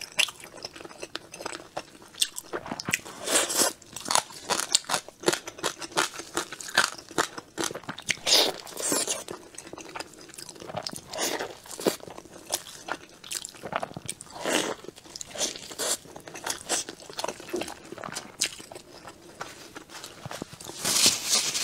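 Close-miked eating sounds: a person chewing and biting a soft steamed dumpling with a minced-meat filling, with irregular wet smacks and clicks of the mouth.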